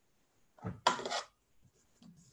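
A piece of silk fabric being shaken out and spread on a table: a short rustling swish with a sharp start about a second in, just after a faint soft thump.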